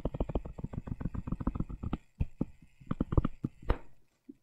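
Stylus tapping on a tablet while drawing dashed lines: a rapid run of light ticks, about ten a second, thinning out after two seconds.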